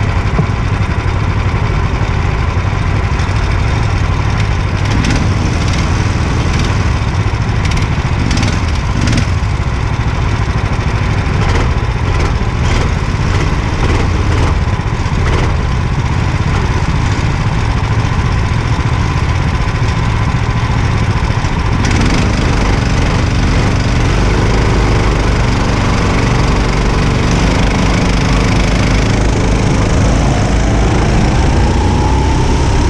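Go-kart engines idling on the starting grid, heard close up from the kart carrying the microphone. About 22 seconds in the sound changes as the engines are opened up, and near the end the pitch climbs as the karts pull away.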